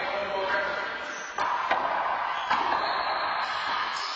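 Handball game: a small rubber handball smacked by hand and off the court walls, three sharp smacks starting about a second and a half in, over voices in the enclosed court.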